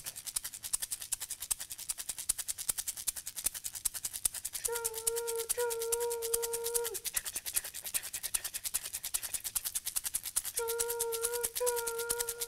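Plastic egg shaker filled with loose grains, shaken in a fast, even chugging rhythm imitating a train. Twice, a steady two-part hooting tone like a train whistle sounds over the shaking, once near the middle and once near the end.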